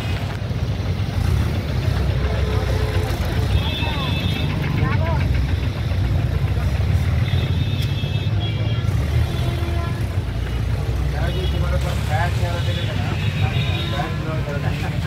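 Street ambience: people talking over traffic, with a steady low rumble throughout.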